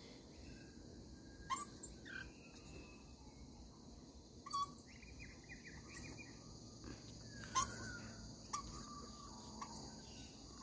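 Rainbow lorikeets feeding on the ground, giving short, sharp chirps every second or so, with a brief chattering run about halfway through, over a steady high hiss.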